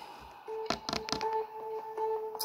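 A few quick light taps and knocks from a hand handling a phone propped on a table, over faint steady held tones in the background.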